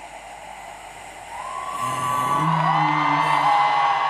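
Live folk band's music swelling back in after a spoken passage: about a second in, a long wavering high note begins, joined by held lower notes as the sound grows louder, over audience whoops and cheers.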